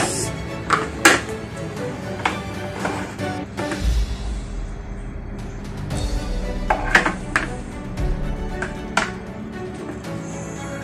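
Music playing throughout, with scattered sharp clicks and knocks of letter and number die blocks being handled and set into the tray of a licence-plate embossing press.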